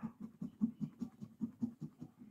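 A coin scratching the coating off a scratch-off lottery ticket in quick, faint, even strokes, about five a second.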